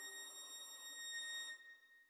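A violin holding one high, quiet note that stops about a second and a half in, leaving a thin ringing tone that fades away.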